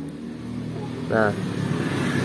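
An engine running steadily, gradually getting louder.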